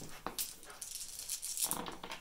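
A handful of small dice rattled in cupped hands and rolled out, clattering onto a cloth game mat in a run of quick clicks.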